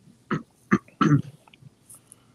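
A person's short throat noises, like throat clearing: three brief sounds within about a second.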